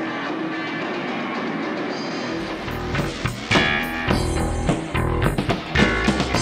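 Live rock band playing an instrumental passage: electric guitar with no bass at first, then bass guitar and drum kit come in about two and a half seconds in, with sharp drum hits.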